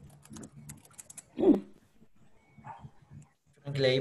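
Computer keyboard typing and clicking over a low steady hum, then one short, loud call about a second and a half in.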